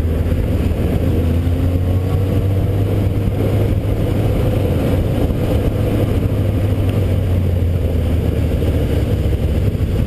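A motorcycle engine under way, heard from the bike carrying the camera. Its pitch rises and falls slowly as the revs change through the curves, over a steady low rumble.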